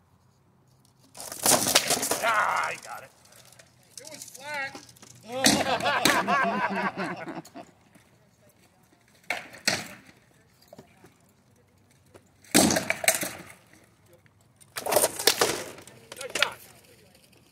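Rattan sparring weapons cracking against shields and armour in short bursts of blows, about a second in, in the middle, twice around ten seconds, and near the end. Voices call out over the strikes in the middle.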